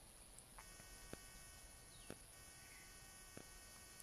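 Near silence: faint room tone with a thin steady high whine and a few soft clicks.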